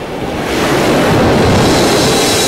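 A rush of ocean surf that swells up over about a second and a half, like a wave surging in.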